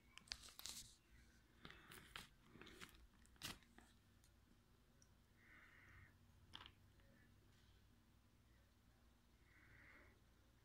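Faint clicks and crackles of a clear plastic container being handled, a cluster in the first four seconds and one more a little past the middle, with low room tone.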